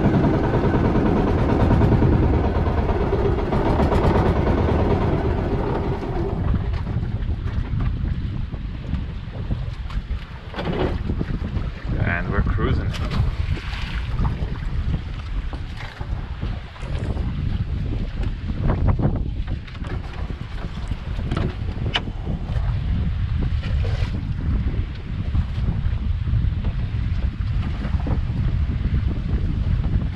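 Outrigger boat's engine running steadily, then cut back about six seconds in. The boat drifts on with wind buffeting the microphone, water washing along the hull and a few scattered knocks.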